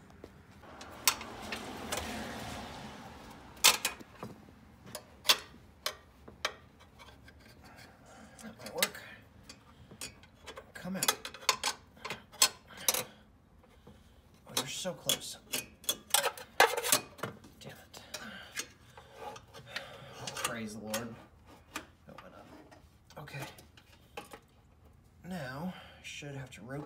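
Irregular metal clicks, taps and knocks from hand tools and a metal brake-type hard line being handled, with rustling handling noise about a second or two in.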